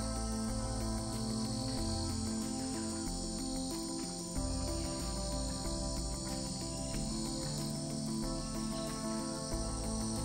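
A steady, high-pitched chorus of insects, like crickets, runs under slow background music of held low notes that change every second or two.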